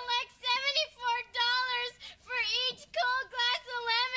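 A young girl's high-pitched voice wailing in a sing-song run of short held notes that bend up and down.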